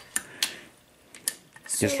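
A socket ratchet clicking a few separate times as it is worked on a nut of a VW swing-axle transaxle's side cover.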